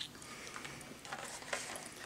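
Quiet room with a few faint small clicks and rustles from candy packaging being handled.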